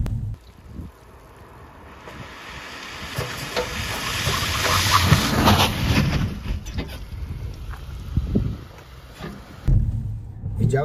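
A Renault SUV driving on wet asphalt, its tyres hissing on the water. The hiss grows to its loudest about halfway through, then fades, with wind on the microphone.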